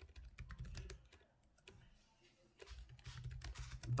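Computer keyboard keystrokes: a quick run of typing, a pause of about a second and a half, then typing again.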